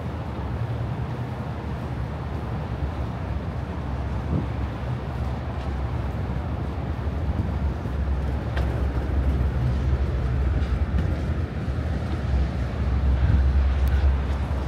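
Steady low engine rumble of boat traffic on the harbour, growing louder near the end.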